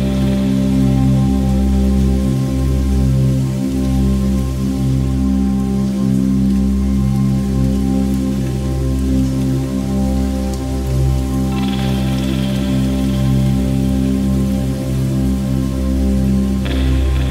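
Ambient meditative background music of sustained, droning low tones, with a rain-like hiss joining about three-quarters of the way in.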